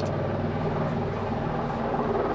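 Steady engine drone from the race's accompanying motor vehicles, holding one even pitch.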